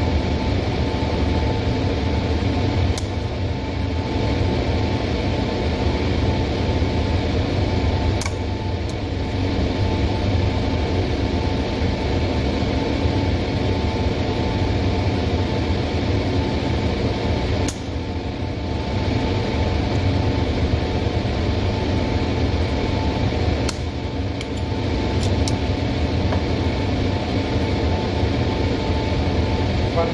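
Steady drone of an electric fan or blower running, with a constant hum tone, unchanging throughout.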